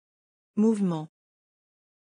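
A single short word spoken by a text-to-speech voice about half a second in; the rest is digital silence.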